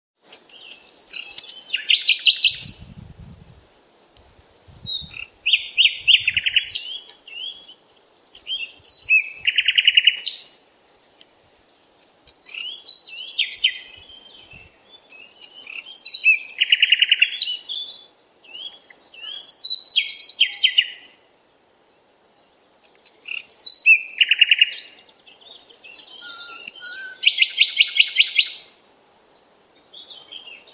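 A songbird singing about eight short high-pitched phrases with brief pauses between them, each phrase built around a fast trill.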